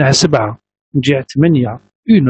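A man's voice speaking over a video-call connection, in two short phrases with a brief pause between them.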